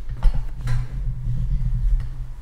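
A low, uneven rumble with two sharp clicks, the louder about a quarter second in and another just under a second in, during a chiropractic neck adjustment of a patient lying face down.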